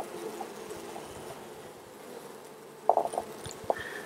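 Honey bees humming on an open hive: a quiet, steady hum, with a brief louder sound about three seconds in.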